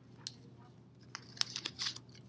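Cut strips of construction paper rustling and crinkling as they are handled and slid across a table, with a few quick crackles in the second half.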